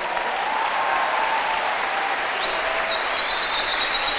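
Large audience applauding steadily. A thin, high, steady whistle-like tone comes in about halfway through.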